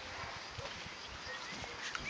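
Doberman puppies play-fighting on grass: scuffling paws and small knocks, with a faint high whine near the end.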